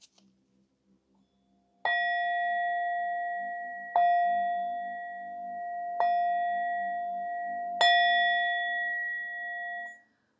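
A bell-like metal instrument struck four times, about two seconds apart. Each stroke rings on in a steady, pure two-note tone that fades slowly until the next, and the ringing cuts off suddenly at the end.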